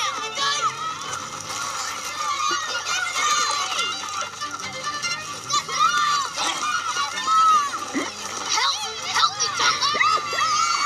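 Boys shouting excitedly as they chase around playing ball ("Just get him!", "Get the ball!"), over a light music score, from a film soundtrack heard through a TV's speakers.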